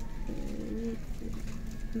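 A woman's voice humming a wordless hesitation "mmm": a short murmur about half a second in, then a longer held hum near the end that runs straight into her speech.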